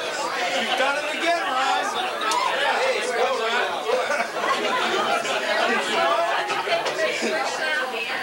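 Overlapping chatter of a small group of adults, several people talking at once without a single clear speaker.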